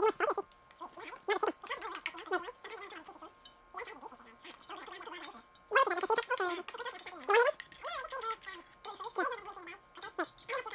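Metal spoons clinking and scraping in stainless steel saucepans while two people eat a thick puree, with wordless voice-like mouth sounds running through it.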